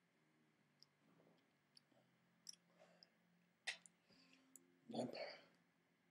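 Faint mouth clicks and swallowing sounds of someone sipping from a paper coffee cup, with one sharper click just before four seconds in, then a short, louder breathy exhale as the cup comes down.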